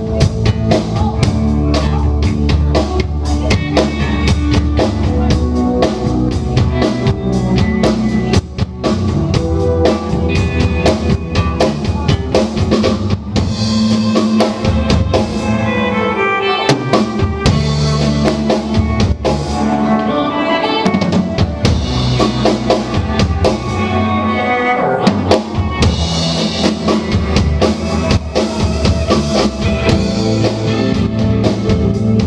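Live rock band playing an instrumental passage: drum kit, electric bass, electric guitar and electric keyboard together, the drums prominent throughout.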